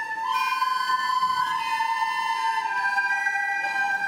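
Children's soprano recorder ensemble playing a slow tune in long held notes, with the pitch changing only a couple of times.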